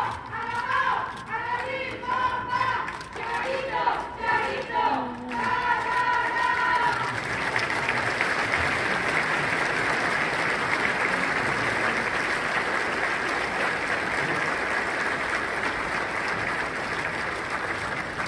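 Large audience clapping in a hall, with voices calling out over the clapping for roughly the first seven seconds; after that the applause carries on steadily.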